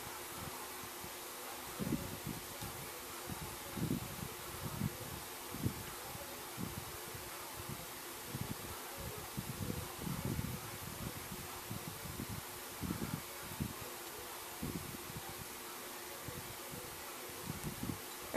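Soft, irregular rustling and bumps of hands working yarn with a crochet hook close to the microphone, over a steady faint hiss and low hum.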